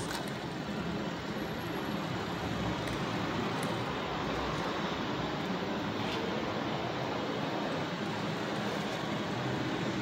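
Steady city street background noise, a low even rumble of traffic with no clear engine or motor tone.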